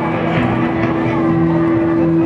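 Dense street noise of traffic and mixed voices, with one steady held tone over it.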